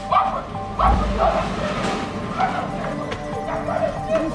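A dog barking repeatedly, short barks a few times a second, over background film music.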